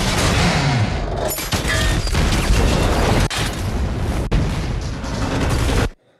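A film sound track of an oil-rig explosion: a dense, loud roar with crashing impacts throughout. It cuts off suddenly just before the end.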